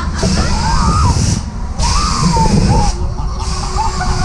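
On-ride sound of a 1980 Höpler Schunkler swinging ride in motion: a loud rumble and rush of air on the microphone, the hiss dropping out briefly twice. Riders' voices rise and fall in pitch over it.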